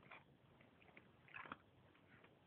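A dog gnawing on a large bone: a few faint, short crunching scrapes of teeth on bone, the clearest about one and a half seconds in.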